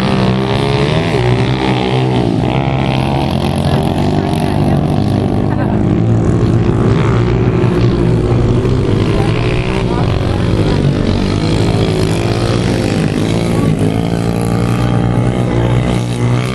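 Pit bike engines revving as the bikes race on a dirt track. Their pitch climbs and drops again and again as the riders work the throttle.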